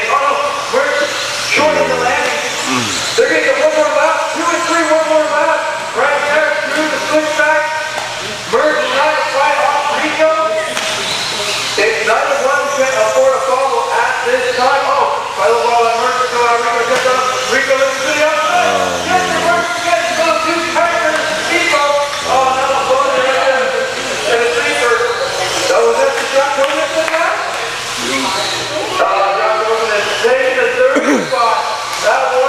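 Electric 1/10-scale 2WD RC buggies racing on an indoor dirt track, their motor whine and tyre hiss running steadily under indistinct talk.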